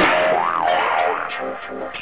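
A comic 'boing'-type sound effect that starts suddenly and swoops up and down in pitch, fading into background music.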